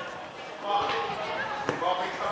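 Voices calling out across an outdoor football pitch, with a football kicked once: a sharp thud near the end.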